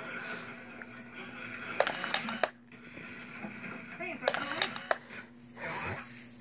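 Indistinct voices in a small room, with a few sharp clicks and a steady low hum.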